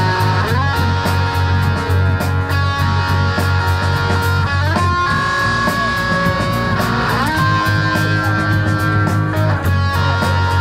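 Live rock band playing an instrumental stretch: electric guitars holding sustained notes over a steady bass and drums, with regular cymbal ticks.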